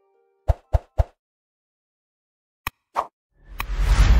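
Edited-in sound effects: three quick plops about half a second in, a click and another plop near three seconds, then a swelling whoosh with a deep rumble at the end.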